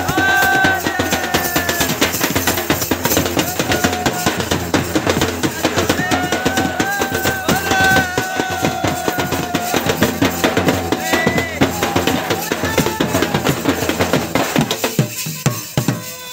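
Village band drums playing a fast, dense dance rhythm: a hand-struck barrel drum and a large flat drum beaten with a stick. The drumming breaks off at the very end.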